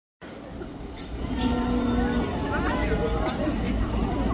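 Crowd of fans and photographers calling out and chattering over a steady low rumble, with a few sharp clicks. The voices get louder about a second in.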